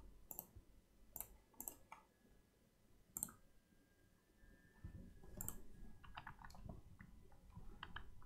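Faint, scattered clicks of a computer keyboard and mouse at irregular intervals, a handful of single clicks with a small cluster near the end, over a quiet room.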